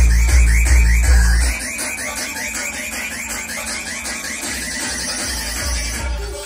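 Electronic dance music played loud over a nightclub sound system. A heavy bass kick drum drops out about a second and a half in, leaving a fast, repeating, rising synth figure.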